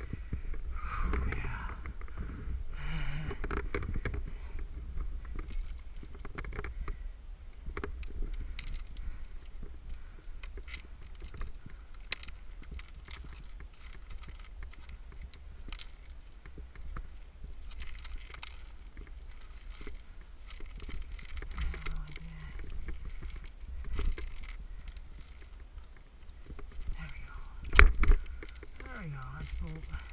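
Climbing protection (metal cams, nuts and carabiners on slings) clinking and scraping against granite as a lead climber works a piece into a crack, with a steady wind rumble on the microphone. Near the end there is a sharp loud knock.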